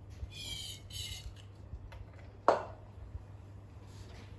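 Two short squirts from an aerosol can of starting fluid into a 1957 Lister D engine, then a sharp knock about two and a half seconds in.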